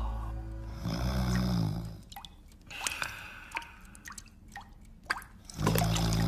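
Cartoon water drips: sharp, pitched plinks falling one by one at irregular intervals, as melting ice drips into a pan. A low, snore-like voice sound comes about a second in and again near the end.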